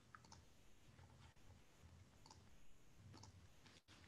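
Near silence: faint room tone with a few small, scattered clicks.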